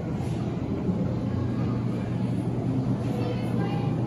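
Indoor ambience of an aquarium hall: a steady low hum under a wash of background noise, with faint voices of other visitors, rising a little near the end.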